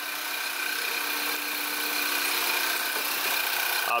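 Turbocharged 2.0 TSI inline-four idling steadily after its fuel injectors were replaced, running evenly with no misfiring cylinders.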